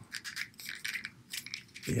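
Small hard plastic pieces clicking and tapping against each other as they are handled and pressed together, a scatter of light, irregular clicks.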